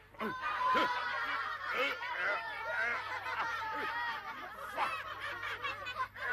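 A group of children laughing together: several high voices overlapping in continuous jeering laughter.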